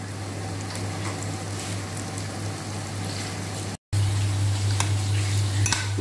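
Breaded chicken cutlets frying in hot oil and clarified butter in a pan, a steady sizzle, with a low steady hum underneath. The sound breaks off briefly near four seconds in, and a louder stretch with a few clicks follows.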